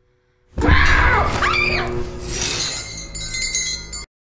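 A horror-film jump-scare sting: after a silent half second, a sudden loud hit with clashing, ringing high tones that fade slowly over the next few seconds.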